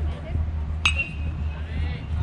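A metal baseball bat striking a pitched ball about a second in: one sharp ping with a brief ring after it.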